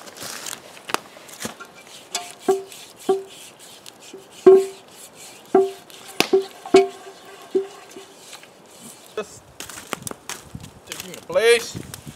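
Cast-iron Dutch oven clinking and ringing as it is wiped out with a cloth to rub in lard. About a dozen short metallic knocks, each leaving a brief ring at the same pitch.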